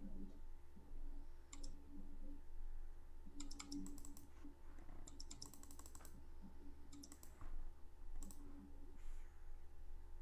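Computer keyboard keys clicking in several short bursts of typing, over a low steady hum.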